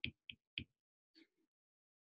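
Near silence with three faint ticks in the first half-second, a stylus tapping on a tablet's glass screen while handwriting.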